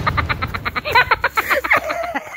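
A person laughing hard in a fast run of short pulses, the pitch bending up and down.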